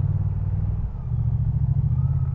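Moto Guzzi V100 Mandello's 1042 cc transverse V-twin running at low revs in first gear, pulling the bike along slowly. Its low, steady note dips briefly about a second in, then picks up again.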